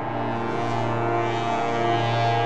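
Slowly evolving ambient synthesizer drone from a VCV Rack patch: a Geodesics Dark Energy complex oscillator with FM and ring modulation, fed through the Dawsome Love ambient effect. A deep held bass note steps down to a lower pitch right at the start, under a dense cluster of steady higher tones.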